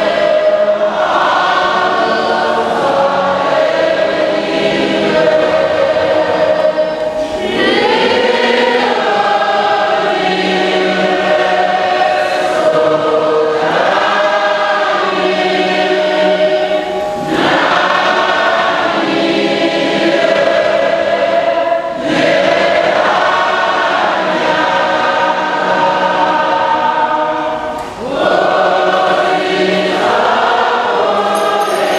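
Church choir singing a hymn in long phrases, with short pauses for breath between them.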